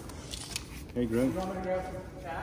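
Faint rustling and handling of a cloth flag as it is held up against a wall. A man's voice follows from about a second in.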